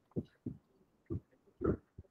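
Four short, low, muffled sounds picked up over a video-call line, spaced irregularly across two seconds.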